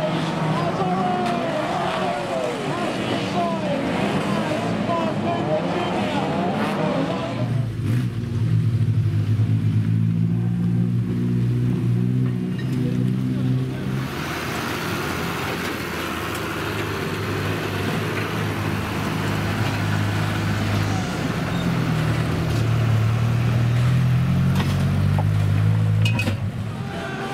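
Banger race cars' engines revving up and down as they race. From about seven seconds in, a farm tractor's engine runs steadily at an even speed as it tows and pushes wrecked cars.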